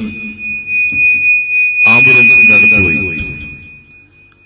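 A single steady high-pitched tone ringing from the public-address system, typical of microphone feedback. It swells while a man's voice comes through about halfway in, then fades near the end.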